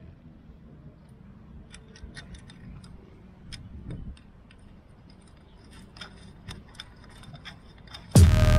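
Scattered light clicks and taps of a bicycle quick-release skewer being fitted through a fork's dropouts and a fork holder.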